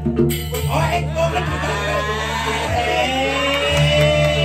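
A man singing or chanting a drawn-out melodic vocal line through a microphone and PA, holding long notes in the second half, over a steady low hum.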